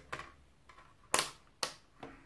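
Rotary selector dial of a handheld digital multimeter clicking through its detents as it is switched on and set to the 20 V range: two sharp clicks about half a second apart, the first just past halfway.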